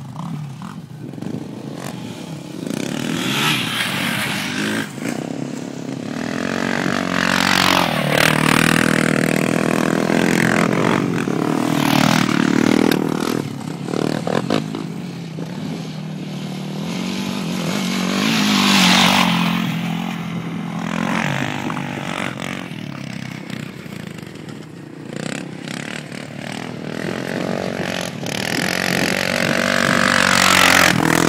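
Sport quad (ATV) engines revving hard as the quads ride and pass on a dirt track. The pitch rises and falls with the throttle, and there are several loud passes that swell and fade.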